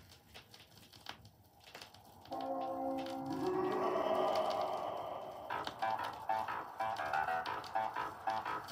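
A 7-inch vinyl single playing on a turntable: faint surface crackle and clicks from the lead-in groove, then the song's intro starts suddenly about two seconds in with a sustained chord that swells, changing a little past halfway into a pulse of short repeated notes, about three a second.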